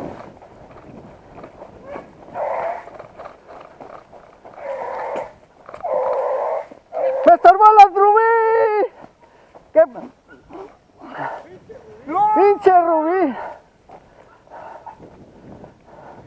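Beagles baying, with a few short, fainter calls and then two loud, long drawn-out bays whose pitch bends up and down. This is hounds giving tongue while running a rabbit's scent.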